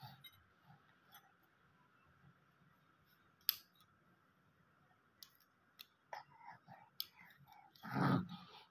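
Mostly very quiet, with a few faint clicks. From about six seconds in, a baby makes short, faint grunts and vocal sounds that grow louder near the end.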